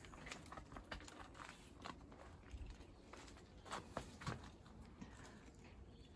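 Faint footsteps and leaves rustling, with a scatter of soft ticks and taps.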